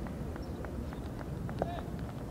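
Wind rumbling on the microphone over open ground, with faint evenly spaced ticks a little over three a second. A short distant shout comes about one and a half seconds in.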